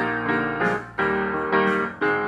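Piano playing a slow hymn accompaniment without singing. A new chord is struck about once a second and left to ring and fade.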